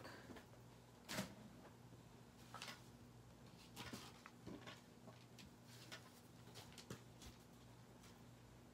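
Faint handling of paper and card on a craft cutting mat: a few soft knocks and rustles, the one about a second in the loudest, over a low steady hum.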